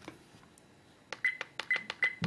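Car dashcam's menu buttons pressed in quick succession, a sharp click with each press and a short high beep on several of them as the selection steps through the settings, starting about a second in.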